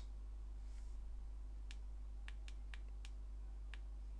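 Faint, sharp clicks, about six in the second half, from fingertips tapping and swiping on a smartphone's glass touchscreen, over a low steady hum.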